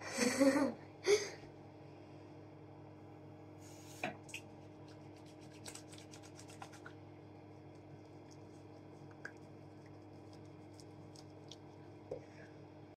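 Hands rubbing together, lathering face wash: soft rubbing with a few light clicks, mostly about four to seven seconds in. A short burst of a girl's voice comes at the very start.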